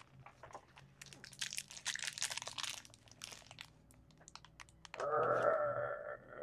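A crinkly wrapper around a Disney Doorables mini figure being crumpled and torn open by hand: a dense crackling for about two seconds, then scattered clicks and rustles.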